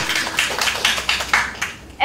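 Scattered clapping from an audience, several irregular claps a second, thinning out and fading toward the end.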